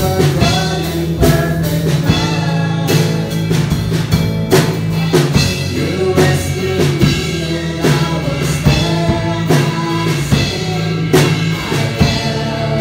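Several voices singing a slow contemporary worship song together, backed by bass guitar, guitar and a drum kit with a regular drum beat.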